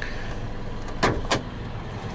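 Hood release of a 2007 Toyota FJ Cruiser being pulled: two sharp clicks about a third of a second apart, a little past the middle, as the lever is drawn and the hood latch lets go.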